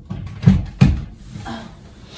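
Two dull knocks about a third of a second apart, about halfway through, with lighter clicks before them: a plug and extension cord being handled and pushed in under a desk.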